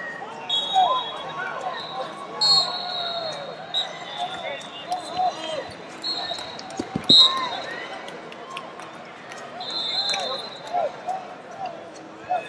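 Busy wrestling-arena ambience: overlapping shouts and chatter of coaches and spectators, with several sharp referee whistle blasts from nearby mats and a few thuds of wrestlers on the mat around the middle.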